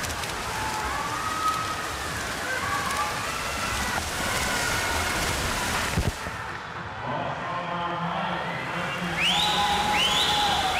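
Race noise in an indoor pool: splashing swimmers and spectators cheering, with a brief thump about six seconds in and repeated rising shrill cheers near the end.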